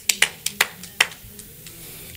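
Scattered applause from a small congregation: a handful of separate claps, thinning out after about a second.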